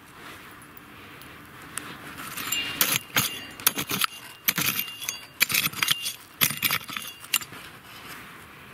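A small hand hoe-cultivator digging into gravelly, stony soil. A quick run of scrapes and clinks of small stones starts about two and a half seconds in and stops shortly before the end.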